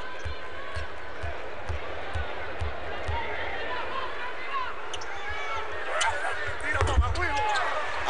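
A basketball bounced on a hardwood court about twice a second by a free-throw shooter, over the steady murmur of an arena crowd. Shouting from the crowd grows near the end.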